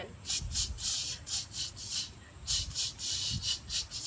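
A run of about a dozen short, irregularly spaced scratchy hissing noises, the beaver sound effect done between the verses of a camp song.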